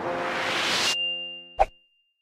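Logo-sting music: a rising whoosh swell over a held keyboard chord that cuts off sharply about halfway through, then a single bright ding-like hit with a ringing chord that fades quickly.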